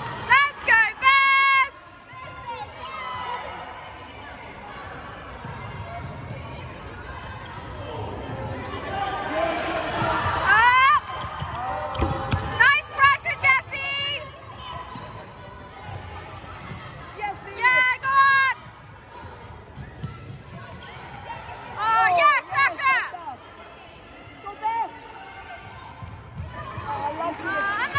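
Trainers squeaking on a wooden sports hall floor as players sprint and change direction. Quick runs of sharp, high squeaks come about a second in, several times around the middle and again near the end, over a low hall murmur.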